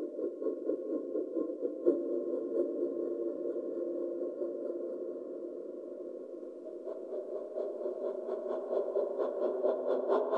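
Ensemble of indigenous wind instruments, among them panpipes, holding a dense cluster of long, overlapping tones. About seven seconds in, a fast pulsing of about four strokes a second joins and grows louder.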